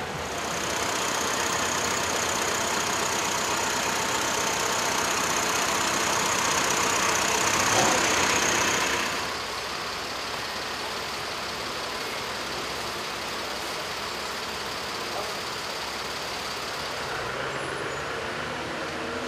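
Street traffic: a motor vehicle's engine running close by, louder for the first half with a thin high whine, then dropping to a steadier, quieter traffic noise.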